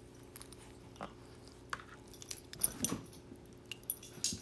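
Dogs making noise: scattered clicks and taps, with a short dog sound about two and a half to three seconds in that is the loudest moment.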